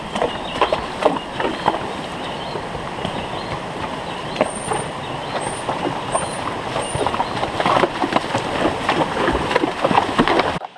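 Horses wading up a shallow rocky stream: hooves splashing and knocking irregularly on submerged stones over the steady rush of the water. Four short high chirps come in the middle.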